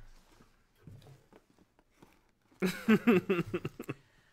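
A person laughing in a run of short bursts, starting about two and a half seconds in after a quiet stretch with faint handling sounds.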